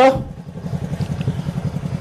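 A small engine running steadily with a low, evenly pulsing throb, just after the end of a man's word.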